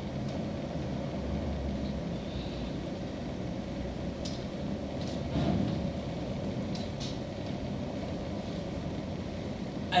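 A steady low rumble of background room noise, with a few faint short clicks or breaths around the middle and a brief soft swell about five and a half seconds in.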